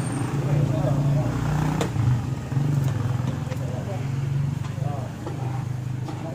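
Indistinct chatter from a group of people over a steady low hum, like a motor running nearby.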